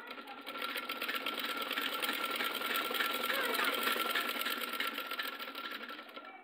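Sewing machine running and stitching fabric: a rapid, even clatter of stitches with a steady whine under it, building up over the first few seconds and easing off to a stop near the end.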